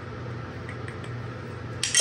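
Quiet kitchen room tone with a steady low hum, and a brief crinkle of a small paper packet near the end as it is handled.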